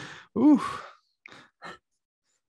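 A man sighs once, a breathy voiced exhale whose pitch rises and falls, about half a second in; two faint short sounds follow.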